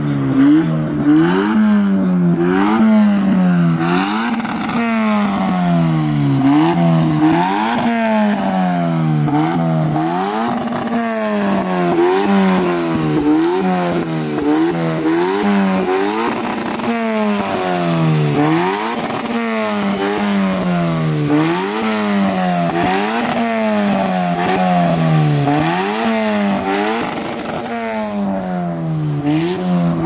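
A car engine revved over and over, its pitch climbing and dropping about once every second and a half.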